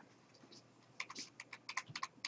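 Faint typing on a computer keyboard: a quick run of about seven keystrokes, starting about a second in after a quiet first second.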